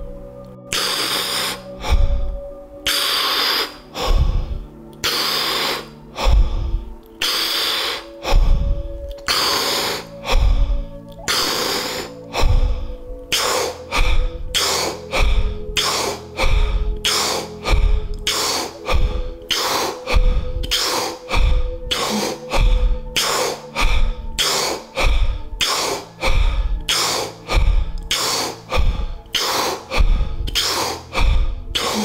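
A person breathing deeply and forcefully in a steady rhythm of about one breath a second, quickening slightly toward the end, each breath with a low thump, over a sustained meditation-music drone. This is the rapid deep-breathing phase of a Wim Hof–style round.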